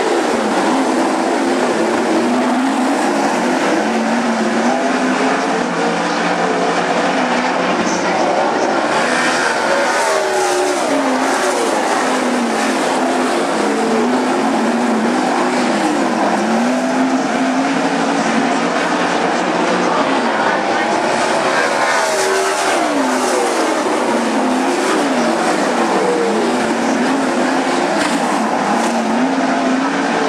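Several 410 sprint car engines, big-block V8s, running at full race volume around a dirt oval, their pitch rising and falling over and over as drivers get on and off the throttle through the turns.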